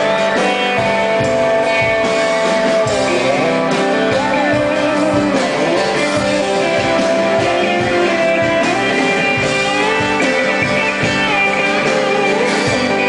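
A live country-rock band plays an instrumental break with an electric guitar lead on a Telecaster-style guitar, its notes bending up and down over the steady beat of the band.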